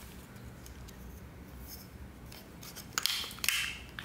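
Handling noise from a plastic and aluminium mini tripod/selfie stick being gripped and worked by hand: mostly faint for the first three seconds, then a short scraping rub about three seconds in as the stick is pulled to extend it.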